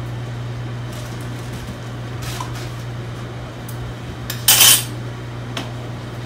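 Spoons and dishes clinking and being moved on a kitchen counter, with a few light clicks and one loud clatter about four and a half seconds in. A steady low hum from a running microwave oven sits underneath.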